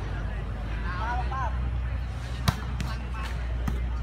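Volleyball struck by players' hands or feet during a rally: four sharp slaps in quick succession in the second half, the first the loudest. A player's short shout comes about a second in.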